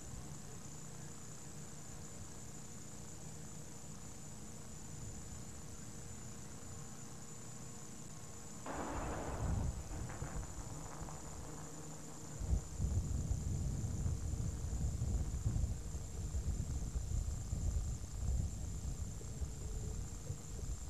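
Steady videotape hiss and hum at first. About halfway through, a brief rush of noise is followed by a gusty, uneven low rumble of wind buffeting the camcorder microphone.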